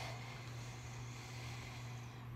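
Quiet room tone: a steady low hum with faint hiss, no distinct events.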